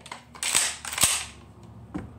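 Pump-action shotgun being racked: a rasping slide of the fore-end, then a sharp metallic clack about a second in as the action closes and chambers a shell.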